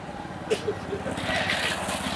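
An engine running steadily in the background, a low pulsing hum, under brief voices.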